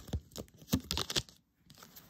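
A tarot deck being shuffled by hand: a quick run of papery card flicks that stops about a second and a half in, then a couple of faint clicks as a card is drawn from the deck.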